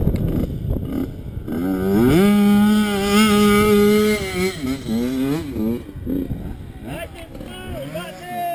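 A dirt bike engine revs up and holds a steady high pitch for about two seconds. It then drops back and makes a few short rises and falls in pitch before easing off.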